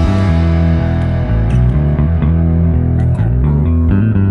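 Rock music with a heavy bass guitar line and guitar.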